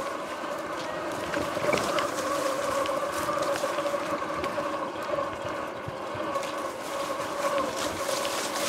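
Electric dirt bike's motor whining at a steady pitch while riding slowly through tall grass, with grass swishing and crackling against the bike and rider.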